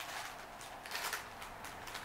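Small clear plastic bags rustling and crinkling as they are picked up and handled, in a few short, quiet scrapes.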